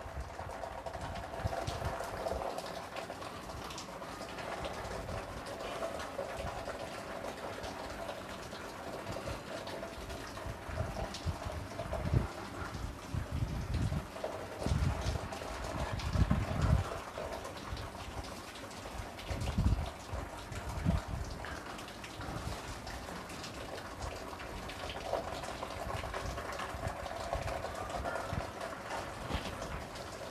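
A whiteboard being wiped clean with an eraser and written on with a marker: soft rubbing and scuffing, with clusters of dull low bumps about twelve to seventeen seconds in and again around twenty seconds.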